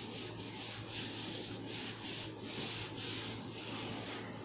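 A whiteboard eraser rubbed back and forth across a whiteboard, wiping it clean in steady strokes about two a second.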